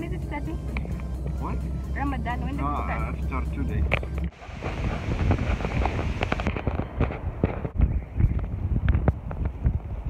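For the first four seconds, a steady low vehicle engine hum heard from inside the cabin, with wavering voices over it. Then, after a sudden cut, wind buffets the phone's microphone outdoors, a rough crackling rush.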